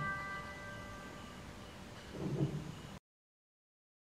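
The final high chord of a piano piece, held with the sustain pedal, ringing and fading away. A faint soft knock comes about two seconds in, and the sound then cuts off abruptly.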